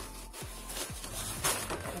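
Rustling and rubbing of plastic-and-fabric cosmetic pouches being handled as a small zip pouch is pulled out of a larger clear bag, louder about one and a half seconds in. Soft background music runs underneath.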